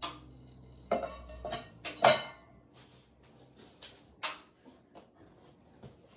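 Glaze-fired ceramic bowls clinking and knocking as they are lifted out of the kiln and handled: a run of sharp clinks, the loudest about two seconds in with a brief ring, then a few lighter taps.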